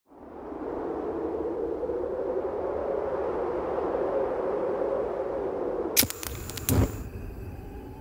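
A steady rushing whoosh of ambience fades in from silence over the first second and holds for about six seconds. A few sharp clicks follow around six to seven seconds in.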